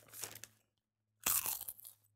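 A bag of chips crinkling and crunching as a hand rummages in it, in two short bursts, the second louder, about a second apart.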